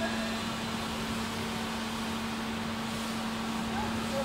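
Injection moulding machine running during a preform mould test, giving a steady low hum over constant machine noise.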